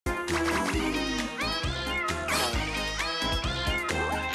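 Upbeat cartoon theme music with a steady pulsing bass beat, and quick sliding pitches running up and down over it.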